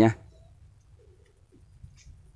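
Faint low bird calls against a quiet background, with the end of a man's word at the very start.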